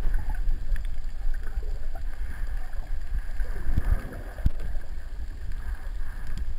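Underwater sound picked up by a submerged camera in shallow sea: a steady low rumble of moving water with a few sharp clicks scattered through it.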